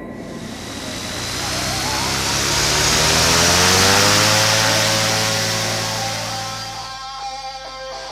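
Microlight trike's engine and propeller at high power, swelling up to a peak about four seconds in and fading away, with a rising tone partway through. Guitar music starts about seven seconds in.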